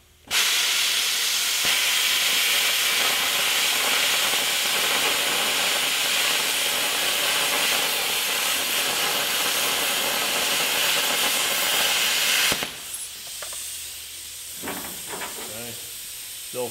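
Hypertherm Powermax45 XP plasma torch cutting 3/8-inch metal plate: a loud, steady hiss that starts suddenly and runs for about twelve seconds. The arc then shuts off and a softer hiss of air carries on.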